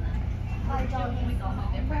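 Steady low rumble inside a Caltrain passenger car moving slowly alongside a station platform, with people talking over it.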